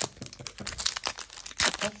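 Foil trading-card pack wrapper crinkling and crackling as it is handled, with a cluster of louder crackles near the end.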